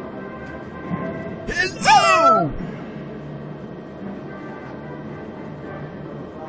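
A short sound effect whose pitch slides steeply downward, about a second and a half in. It plays over the steady background music and hum of a slot machine.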